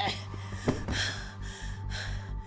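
A woman straining and gasping for breath in a series of short, ragged gasps, then breathing heavily. A low, pulsing music score comes in about halfway through.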